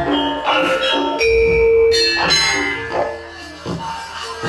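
Javanese gamelan playing, bronze metallophones striking ringing, pitched notes, some held for most of a second.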